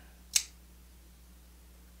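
Zero Tolerance 0770CF assisted-opening flipper knife firing open once: a single sharp snap as the spring-assisted blade swings out and locks, about a third of a second in.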